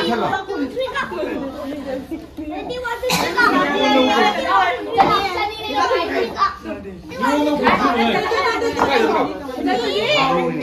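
Several people talking at once, lively overlapping voices with no single speaker standing out.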